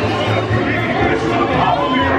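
Dark-ride show soundtrack playing: music with overlapping voices, continuous and fairly loud throughout.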